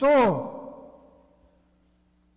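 A man's voice ending a word on a falling pitch. The sound lingers in the church's reverberation and fades away within about a second, leaving near silence.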